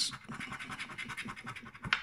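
A coin scratching the rub-off coating of a scratch-card advent-calendar door: a fast run of short, dry scraping strokes.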